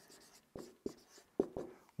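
Marker writing on a whiteboard: a few short, separate strokes and taps, faint and spaced out across the two seconds.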